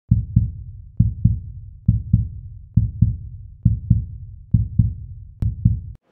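A heartbeat-style sound effect: a low double thump repeated about once every 0.9 seconds, seven times, each beat fading out. A sharp click comes just before the last beat, and the sound cuts off suddenly at the end.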